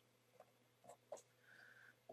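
Near silence, broken by a few faint taps and a brief faint scratch of a felt-tip pen on paper near the end.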